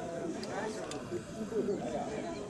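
Indistinct people talking in the background, several voices overlapping.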